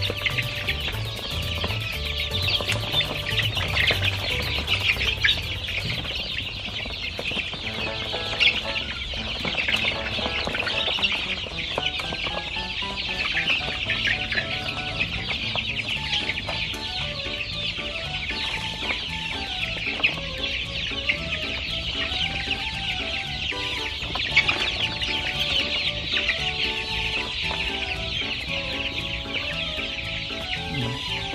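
A crowded flock of month-old laying-hen chicks cheeping nonstop, many high peeps overlapping, excited because they expect to be fed. Faint background music plays underneath.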